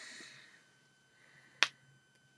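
A soft breath, then a single sharp click about one and a half seconds in.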